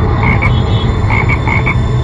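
Loud, dense chorus of croaking frogs, with short high chirps in a few quick clusters, once near the start and several times in the second half.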